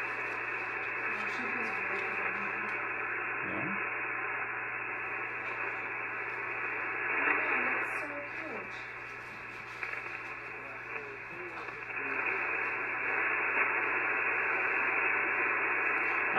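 HF transceiver on 40 metres receiving static hiss, cut off sharply at the top like a voice receiver's narrow passband, with a weak station's voice faintly heard under the noise. The signal is very light, barely above the noise, and the hiss dips for a few seconds midway.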